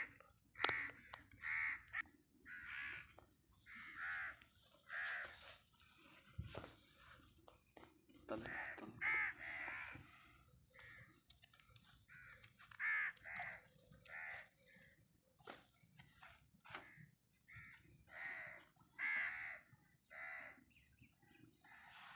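Crows cawing over and over, in short runs of two or three caws spread through the whole stretch. There are a few faint clicks in between.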